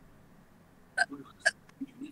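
Two short, hiccup-like bursts of laughter from a person, about half a second apart, starting about a second in.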